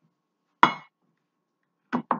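A single sharp clink of a hard object being knocked or set down, ringing briefly.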